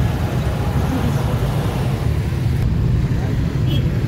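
Steady low rumble of a moving road vehicle: engine and road noise at an even level.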